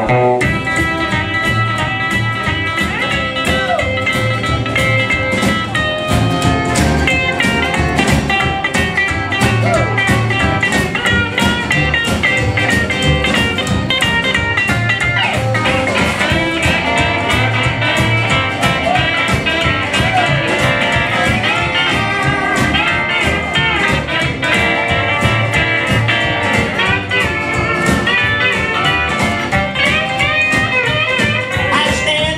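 Live country band playing an instrumental break without vocals: electric and acoustic guitars, drum kit and keyboard over a steady beat.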